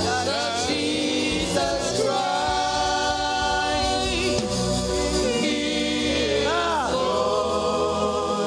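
Live gospel worship singing: a male lead singer and backing singers on microphones holding long, wavering notes over a steady instrumental accompaniment.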